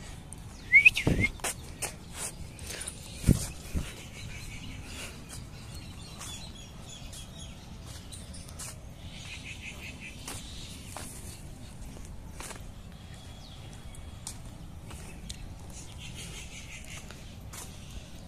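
Birds chirping and trilling in the background. A short rising chirp comes about a second in, and several sharp knocks and clicks fall in the first four seconds, the loudest about three seconds in.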